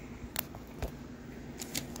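Handling noise of a phone being set on a kickstand: a few light clicks, about half a second and a second in and again near the end, over a faint steady hum.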